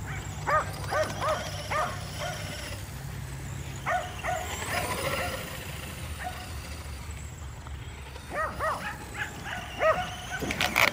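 Kerry Blue Terriers barking in short excited bursts: a run of barks in the first two seconds, a couple around four seconds in, and another cluster near the end.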